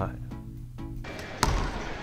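A few notes of soft background music, then a single basketball bounce on a hardwood gym floor about one and a half seconds in, followed by steady room noise.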